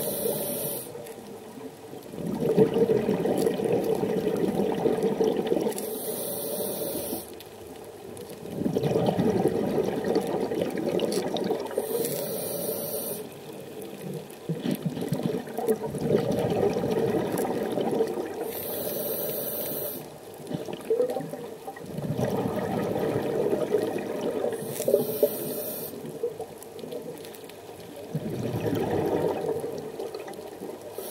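Scuba diver breathing through a regulator, five breaths: a short hiss on each inhale about every six seconds, each followed by a longer rush of exhaled bubbles.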